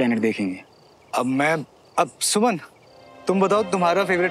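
Faint, short cricket chirps in the pauses between spoken phrases, with background music coming in about three seconds in.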